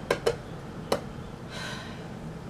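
A few small clicks and then a short rub from a small round metal tin being handled in the hands, the sharpest click about a second in.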